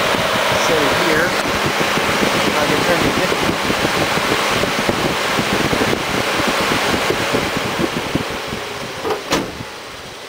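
Electric radiator cooling fan, taken from a mid-1990s Ford Thunderbird and fitted in place of the engine-driven fan, running with a steady loud rush of air. About nine seconds in there is a click as the ignition is switched off, and the fan's rush fades away.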